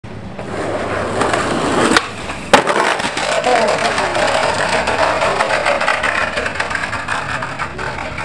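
Skateboard wheels rolling over paving stones, growing louder, then two sharp wooden clacks about half a second apart around two seconds in, the second the loudest. The rough rolling noise then continues as the skater goes down on the paving and the board runs off.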